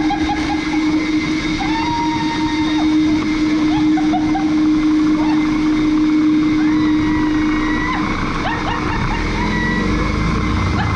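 Leaf blower running flat out with a steady motor whine and rushing air, blowing a roll of blue paper towel off a paint-roller spindle taped to its nozzle. The motor cuts out about nine seconds in.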